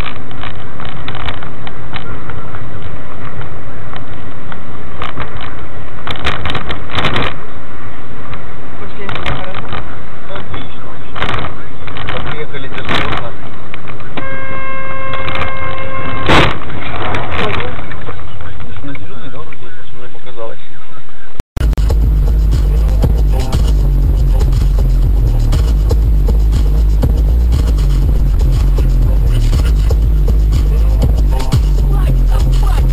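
Loud dashcam audio from inside a moving car, with road and cabin noise. A car horn sounds one long steady note about halfway through. Then the sound cuts to music with heavy bass.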